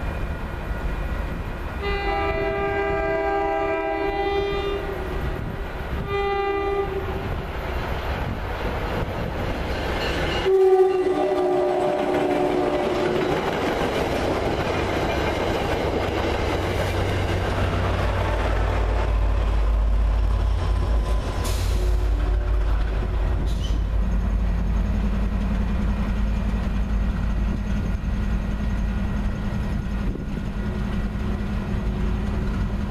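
A train's multi-tone air horn sounds two blasts, the first about two seconds long, then a third near the middle. The horn is followed by the rushing, clickety-clack wheel noise of the train going by. Toward the end a diesel locomotive idles with a steady low rumble and hum.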